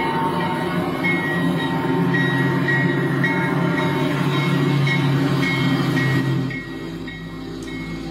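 Freight-train sound, a dense low rumble with steady high whistle-like tones, opening a country-rock track. It drops away about six seconds in, leaving a quieter sound.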